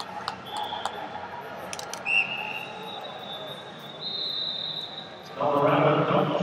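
Arena hall ambience from a multi-mat wrestling tournament: scattered clicks and knocks, with several high, steady whistle tones, one lasting about three seconds. A man's voice comes in near the end.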